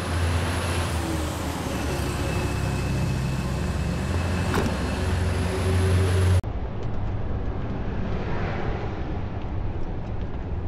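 Engine of a large old SUV running with a steady low rumble, with one sharp click about four and a half seconds in. About six seconds in the sound cuts abruptly to the duller, steady noise of a vehicle driving on the road.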